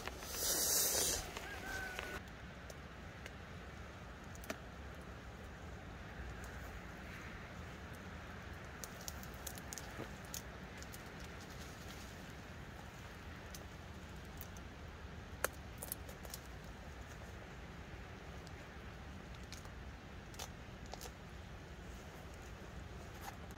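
Quiet outdoor ambience on a wet mountainside: a low steady rumble with scattered light clicks and ticks, after a brief rustle in the first second.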